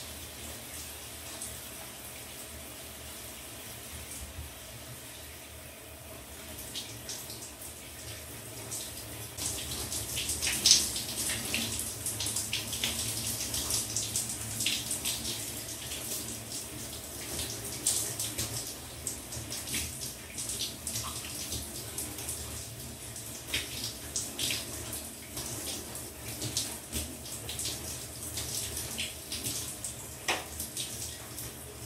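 Shower water running, with irregular splashing and spattering that gets louder and busier about a third of the way in.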